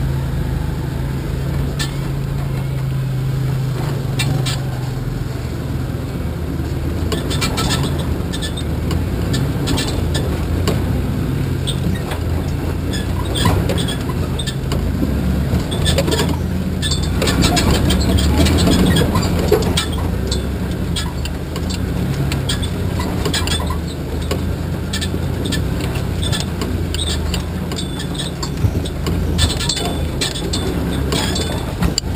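Solid-axle-swapped Chevy S10 Blazer's engine running steadily, heard through its hood, while the truck works up a rough dirt trail. Frequent knocks and rattles from the body and suspension join in several seconds in and are busiest around the middle.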